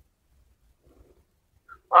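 Near silence on a phone line, with one faint brief sound about a second in. A voice starts speaking right at the end.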